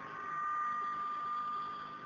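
A pause in speech: a faint, steady high-pitched tone, a few even pitches held together, that swells a little about half a second in, over low room noise.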